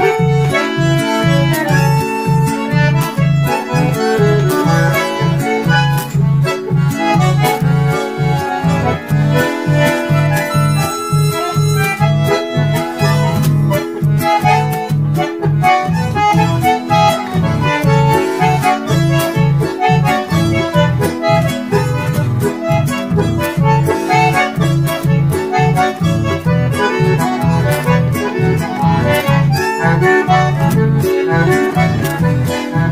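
Two bandoneons playing a chamamé melody in harmony, held reed chords over an acoustic guitar's steady, pulsing bass-and-strum accompaniment.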